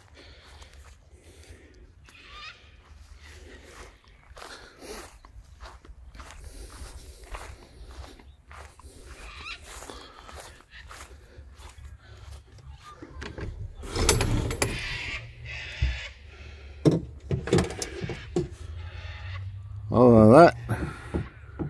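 Footsteps through grass and handling noise from a hand-held camera, uneven and quiet, with a louder rustle about two thirds of the way through and a few knocks near the end.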